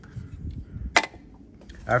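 A single sharp click about a second in, with a short ring: a snap-off utility knife set down on a wooden cutting board beside a metal cutting guide.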